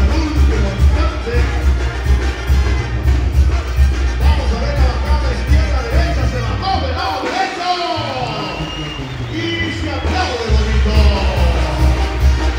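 Loud music with a heavy, steady bass beat that drops out for about four seconds past the middle and then comes back, over crowd noise and cheering.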